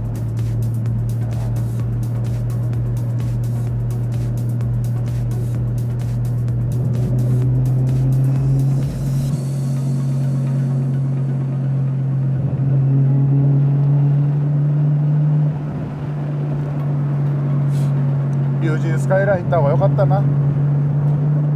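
Nissan Skyline R33 GT-R's RB26 twin-turbo straight-six droning steadily inside the cabin while cruising, its pitch rising a little about eight seconds in and dipping briefly near sixteen seconds. Wind buffets the microphone through the first half.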